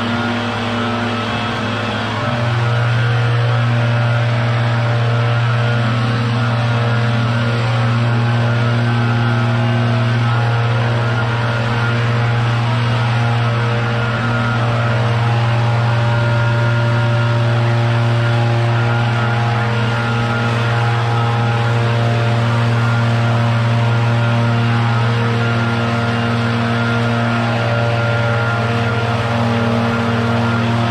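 Two backpack leaf blowers running steadily, a low hum with overtones; a second blower comes in louder about two seconds in.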